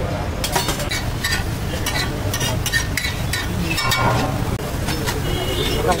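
Repeated clinks and scrapes of a metal spatula on a flat iron griddle over a steady low rumble, with voices in the background.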